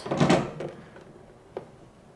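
A potted plant being slid down into a self-watering pot, a short scraping knock in the first half second, then a faint click.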